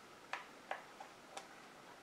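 Four faint, irregular clicks and taps from a makeup palette compact being handled in the hands.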